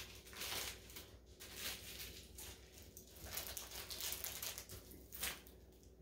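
Faint rustling and crinkling of a clear plastic package being handled, with scattered light taps.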